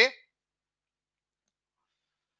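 The tail of a man's spoken word in the first quarter second, then dead silence.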